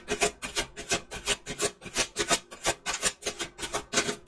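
A deck of tarot cards being shuffled by hand: an even run of short rasping strokes of card sliding over card, about three or four a second.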